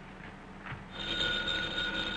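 Telephone ringing: one steady ring starts about a second in and lasts about a second and a half.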